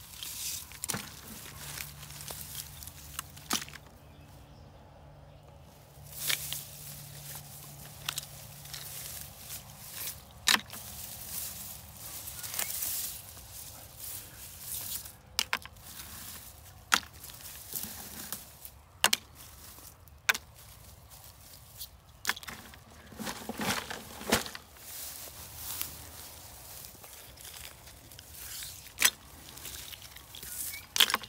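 Hand picking through grass and matted plastic litter: rustling and crinkling, with irregular sharp clicks and ticks of small plastic pieces such as bottle caps.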